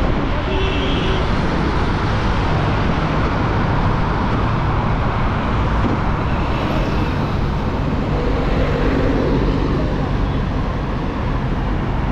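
Motorcycle riding through city traffic: steady wind rush over the camera's microphone, with the bike's engine running underneath.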